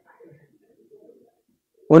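A pause in a man's speech, with only a faint low sound in the quiet room, then his voice starts again loudly near the end.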